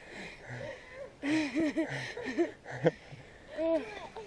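Short voiced sounds in quick rising-and-falling runs, with hard breathing, from people climbing steep wooden stairs.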